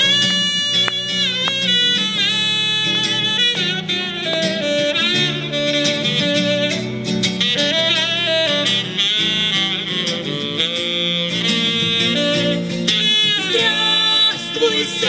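Saxophone playing a melodic solo with bends and vibrato over strummed acoustic guitar chords, an instrumental break in a song.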